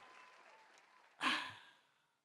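Near silence, broken about a second in by one short breathy exhale from a person, lasting under half a second.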